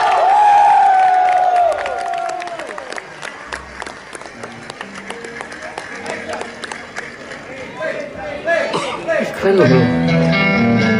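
Live concert audio from a TV stage show: a long, drawn-out voice bends and fades over the first three seconds, then quieter electric guitar playing with crowd noise follows.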